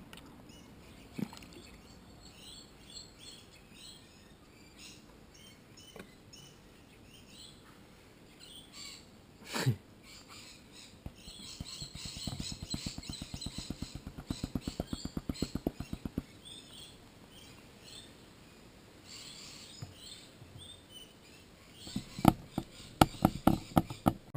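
Faint small-bird chirps in the background, over handling noises from a small plastic snuffer bottle and a plastic gold pan with a little water in it. There is one loud falling squeak about ten seconds in, a patch of rapid pulsing from about twelve to sixteen seconds, and a few sharp taps near the end.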